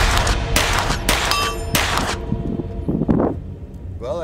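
Rapid string of semi-automatic shots from a CZ Scorpion EVO S1 9mm pistol being emptied as fast as the trigger allows, stopping about two seconds in.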